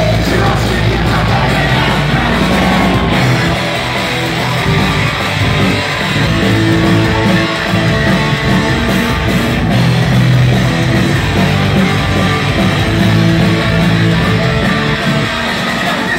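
Live punk rock band playing loudly, guitars to the fore over bass and drums, recorded from within the concert crowd.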